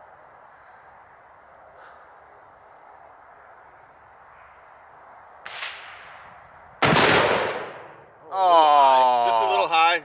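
A single shot from a large-calibre rifle about seven seconds in: a sudden, very loud crack that fades out over about a second, after a softer short noise a second earlier. A man's drawn-out exclamation follows near the end.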